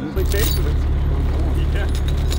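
A diesel wheel loader's engine idling steadily, a low even drone, with a man laughing over it.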